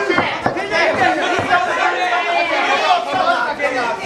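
Many voices shouting and talking over one another at once, from spectators and ringside people during a fight.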